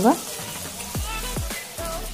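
Chopped okra sizzling as it fries in oil in a kadai, a steady hiss, with a few low falling sweeps over it about a second in.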